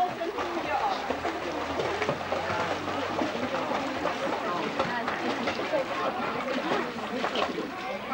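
Splashing from children kicking across a pool on kickboards, under the steady chatter and calls of a crowd of spectators.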